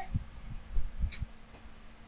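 A few soft, low thumps in the first second or so, over a faint steady hum.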